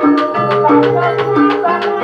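A live Javanese gamelan ensemble accompanies an ebeg (kuda kepang) dance. Kettle gongs and hanging gongs play a repeating pattern of ringing notes under quick, steady drum strokes, and a wavering melody line runs over the top.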